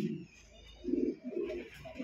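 Domestic pigeon cooing in a cage: low, throaty coos, two close together about a second in and more starting again near the end.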